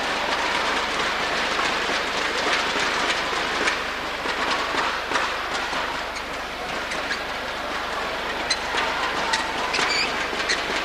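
Indoor arena crowd at a badminton match: a steady loud din of spectators with many scattered sharp claps and clacks.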